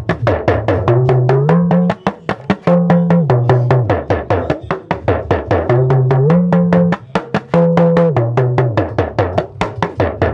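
Yoruba hourglass talking drum played with a curved stick in rapid strokes, its pitch bending up and down between a low and a higher note as the drum is squeezed under the arm. The phrase repeats about every two and a half seconds.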